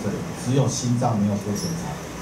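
Speech: a man lecturing through a microphone, over a steady low hum.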